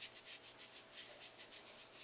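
Quiet rubbing of a round makeup sponge against the skin of the cheek and jaw as it spreads pressed mineral powder foundation, in a quick run of short soft strokes, several a second.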